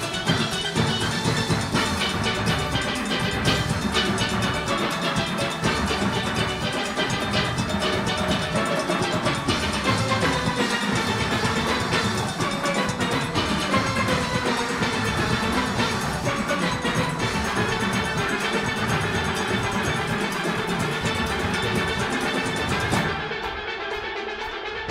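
A full steel orchestra playing steadily at a fast tempo: the ringing tenor and mid-range steel pans over the bass pans, driven by a percussion section. About a second before the end the sound turns duller and a little quieter.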